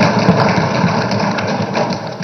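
Legislators thumping their desks in a large debating chamber: a dense, continuous run of rapid, irregular knocks.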